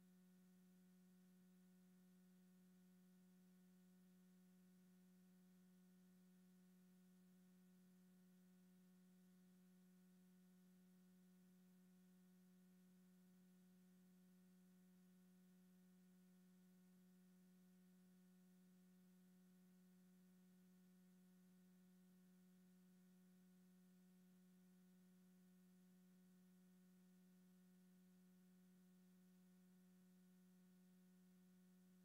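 Near silence: a faint steady hum, one low tone with fainter overtones above it, unchanging throughout.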